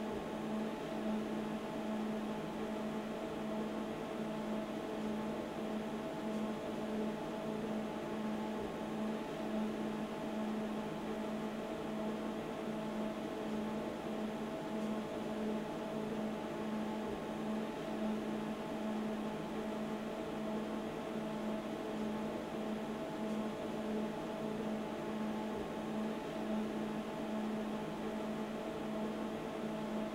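A steady machine hum with a low held tone and a faint hiss, unchanging throughout, like a running ventilation fan or other workshop machinery.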